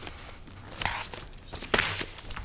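Paper being handled and pages turned close to a desk microphone: a soft rustle about a second in, then a louder, brief swish near the end.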